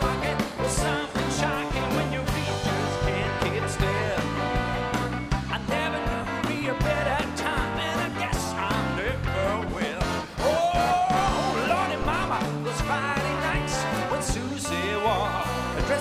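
Live symphony orchestra and rock band playing an upbeat rock-and-roll song, with a steady drum and bass beat under the orchestra; a rising melody line stands out about ten seconds in.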